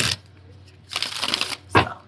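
A deck of tarot cards being shuffled by hand: a quick run of rapid card clicks lasting under a second, about a second in, followed by a single tap.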